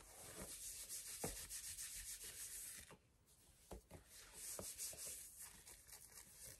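Soft fingernail scratching and rubbing on knit fabric: a thick knit thigh-high sock, in two stretches with a short pause about three seconds in.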